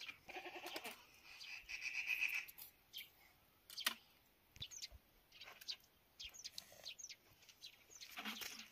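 A goat bleats in the first couple of seconds, a wavering call. After that come short, scattered crunches and scrapes of snow being scooped by hand into a plastic jug.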